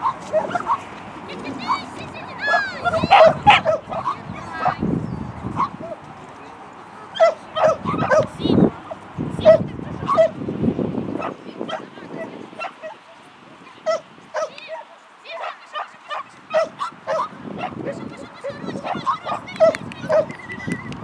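Shetland sheepdog barking over and over in short, high yips, in quick runs with a few brief lulls.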